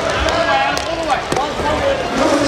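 Inline hockey play: sharp clacks of sticks and puck on the plastic rink floor, several in quick succession, over shouting voices from players and crowd.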